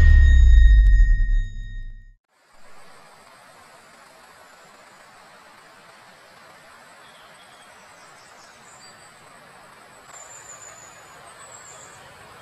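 A loud, deep logo intro sound with a few held high tones cuts off about two seconds in. It is followed by the faint, steady rush of a river's current, with a few faint high chirps near the end.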